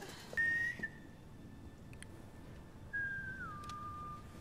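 A person whistling a short two-part signal call: one steady high note, then, about three seconds in, a high note that drops to a lower held one. It is the secret signal whistle shared with Nat.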